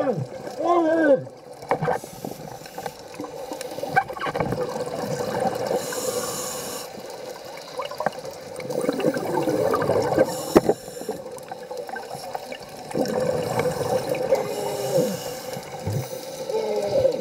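A scuba diver's regulator breathing, heard underwater: a hissing inhale about six seconds in and again near the end, and gurgling bursts of exhaled bubbles between them.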